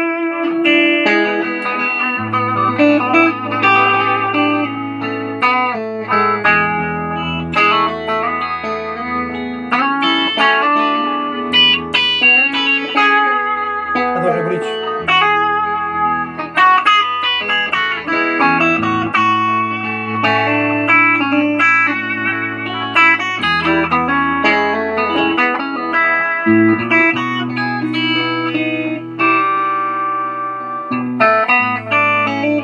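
Telecaster-style electric guitar fitted with Nuclon pickups playing a melodic lead line over a backing track, with a bass line holding low notes that change every few seconds.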